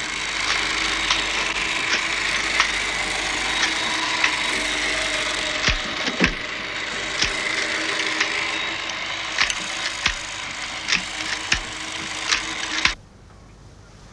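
A steady rasping, scratchy noise with many sharp, irregular clicks, stopping abruptly about a second before the end.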